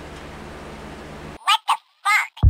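A steady low hum that cuts off abruptly, followed by three short, high-pitched calls in quick succession near the end.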